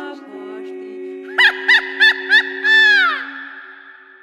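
Unaccompanied women's voices holding low sustained notes, over which come four short, high yelping calls, each rising and falling in pitch, about three a second, then one longer call that slides down. The calls are the loudest sounds and ring on in reverberation as the held notes fade.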